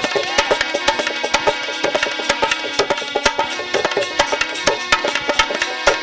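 Bundeli folk ensemble playing without singing: held harmonium notes under dholak drumming and many sharp strikes from hand percussion, in a quick, steady rhythm.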